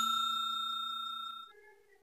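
Bell chime sound effect ringing out and decaying, the tail of a notification-bell ding; it dies away about three quarters of the way through.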